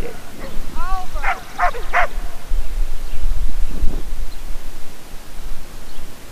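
An Australian Shepherd barks several short, sharp times in the first two seconds, frustrated during agility handling. A loud low rumble follows for a few seconds.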